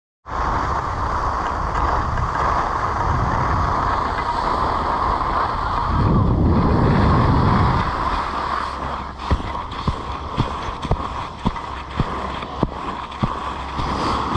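Skis running down a snow piste, with wind rushing over the action camera's microphone; the rush swells and deepens from about six to eight seconds in. After that come sharp knocks about twice a second as the skis ride over chopped-up, bumpy snow.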